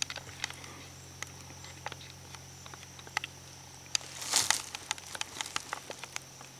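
Scattered light clicks and ticks, with a brief rustle about four seconds in, over a faint steady high-pitched whine: quiet movement around the camera and hunters in the woods.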